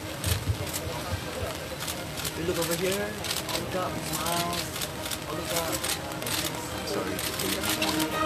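Background voices of people talking and murmuring among themselves, with scattered sharp clicks throughout.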